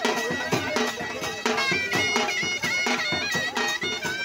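Traditional folk dance music: a reed pipe holds a steady drone and plays a wavering, ornamented melody over a regular beat on barrel drums (dhol).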